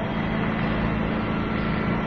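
A steady, even hum with hiss underneath and no change in level.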